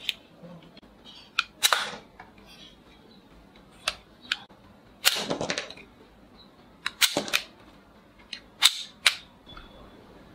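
Plastic soft-bullet toy revolver being handled and fired: a string of sharp plastic clicks and pops from its hammer, cylinder and spring, about a dozen spread irregularly. The loudest come near two, five and seven seconds in.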